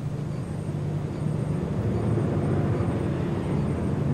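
InterCity 125 diesel train running along a station platform: a steady low engine hum that slowly grows louder.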